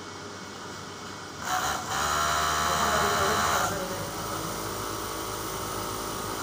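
Industrial sewing machine running in one burst of about two seconds, starting about a second and a half in, with a whirring motor over a steady low hum.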